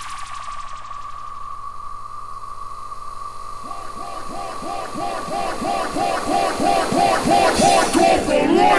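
Instrumental breakdown of a hardcore techno track with the kick drum dropped out. A held synth tone sits under a falling sweep, then from about four seconds in a repeating swooping synth figure, a little over two a second, builds in loudness.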